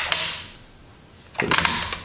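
Hard plastic parts of a Hasbro Rescue Bots Heatwave transforming toy clicking and rattling as it is folded into truck mode. A burst of clicks comes at the start and another near the end, with a quieter gap between.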